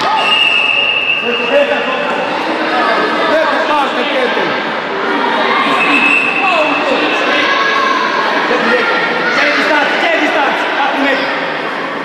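Many voices of players and onlookers calling out in a large echoing sports hall during a futsal match. A referee's whistle sounds twice, once at the start for about a second and again briefly about six seconds in.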